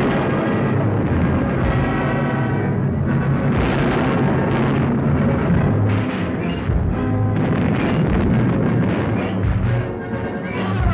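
Orchestral music with timpani.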